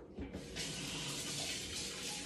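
A kitchen tap turned on, water running steadily into the sink, starting about half a second in after a short knock.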